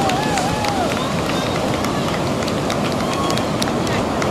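Ocean surf breaking on a beach: a steady rush of waves, with a person's wavering whoop in the first second.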